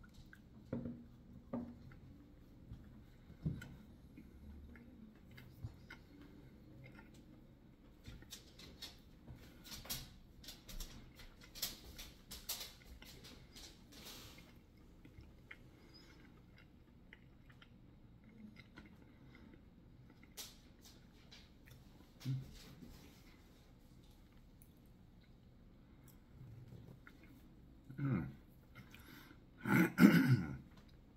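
A person eating a bite of food: faint, scattered chewing and crunching clicks, thickest about a third of the way in, then a couple of short low hums of the mouth near the end.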